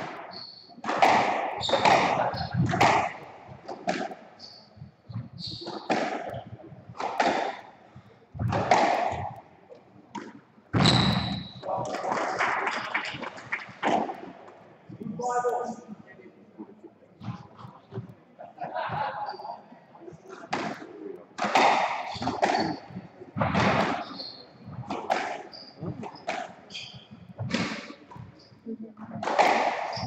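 Spectators chatting among themselves, several voices overlapping, with a few short sharp knocks now and then.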